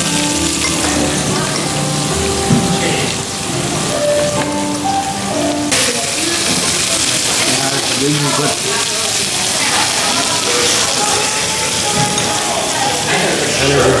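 Meat and vegetables sizzling on a hot cast-iron griddle plate, a steady hiss, with background music playing over it.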